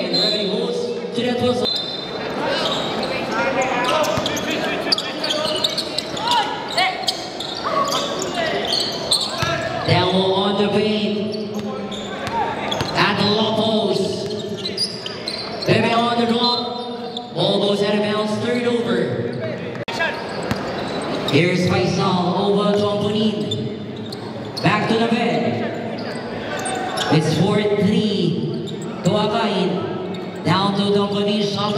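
A basketball bouncing and being dribbled on an indoor court in a large gym, with voices calling and shouting over it throughout.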